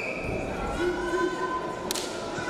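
Sports-hall ambience with a crowd murmuring. About a second in, a few held notes start, like music or a sung voice over the PA.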